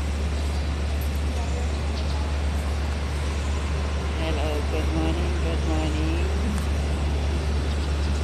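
Steady street traffic noise with a constant low rumble, with no single event standing out.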